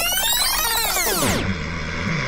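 Electronic synthesizer sweep: a dense cluster of tones glides up and then back down, cutting off about one and a half seconds in and leaving a low steady hum.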